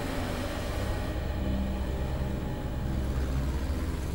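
Street traffic: a steady low motor-vehicle engine rumble with road noise.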